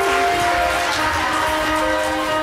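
Live pit orchestra playing instrumental music in long, held chords.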